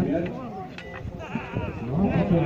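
A crowd's voices calling out over one another, many pitches at once.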